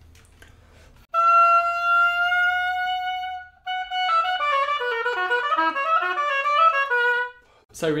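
Oboe played on a Jones Double Reed student (red) medium-soft reed. About a second in comes one long held note that creeps slightly upward in pitch, then a short break, then a quick run of changing notes ending on a lower held note. The reed plays almost a semitone flat, so the player has to bite it up to pitch.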